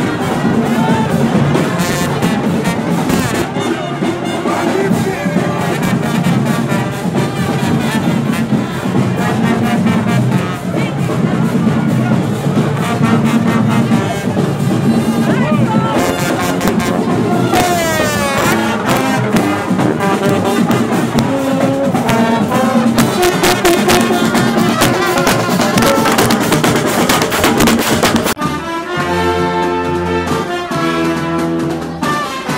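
Marching band playing a fast piece on brass (trumpets, trombones and sousaphones) over percussion, heard loud and close. About two seconds before the end it cuts abruptly to a different, cleaner recorded music track.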